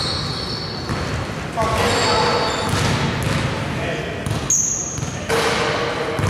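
Basketball bouncing on a hardwood gym floor, with indistinct voices echoing in a large hall.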